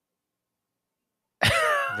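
Dead silence, then about a second and a half in a man's voice breaks in suddenly with a loud, falling vocal sound.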